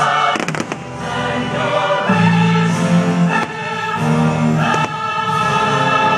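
Fireworks show soundtrack with a choir singing long held notes, over fireworks bursting; a quick cluster of cracks comes about half a second in, with single pops a few times after.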